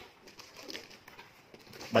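Faint rustling and handling of a cardboard box's flaps and the plastic-wrapped product inside as the box is opened, with a voice starting right at the end.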